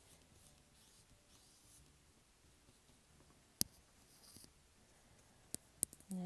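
Faint scratchy swishes of a paintbrush laying acrylic paint on paper. A sharp click about three and a half seconds in, and a few smaller clicks near the end.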